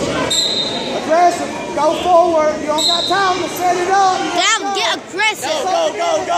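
Coaches and spectators shouting and calling out in a large gym hall during a wrestling bout. There are two brief high squeaks, one just after the start and one about three seconds in.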